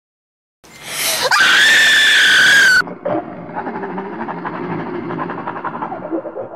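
A loud, high-pitched human scream held for about two seconds, starting just under a second in and cutting off abruptly. It is followed by a lower, rough, pulsing sound through the rest.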